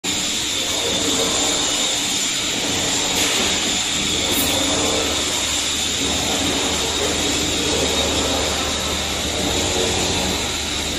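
Steady industrial machinery noise in a factory hall: a constant high whine over a low hum, unchanging in level.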